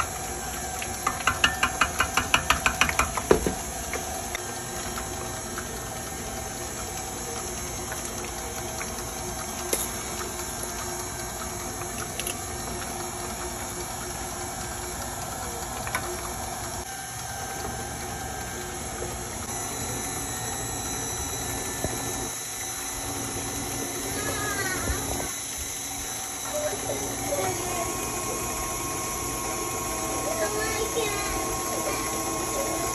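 KitchenAid stand mixer running steadily as it beats cheesecake batter in its steel bowl. In the first few seconds there is a quick run of light clinks, about five a second.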